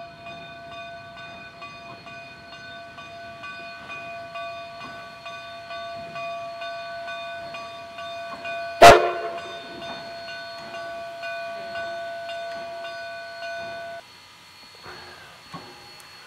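Narrow-gauge K-36 steam locomotive No. 487 working: a steady whine of several fixed tones over a faint regular beat, a sound likened to breathing. A single sharp, loud crack comes about nine seconds in, and the locomotive sound cuts off about two seconds before the end.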